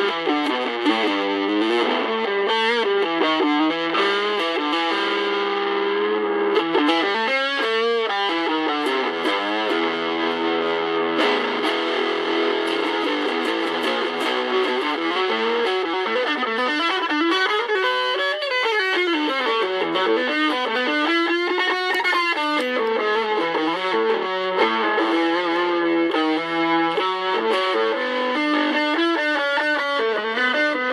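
Electric guitar played through a small home-built all-valve battery guitar amplifier running on 1950s D-series battery valves (DL96 output valve). It plays a continuous run of single notes and phrases, with notes bending and wavering up and down in pitch in the middle.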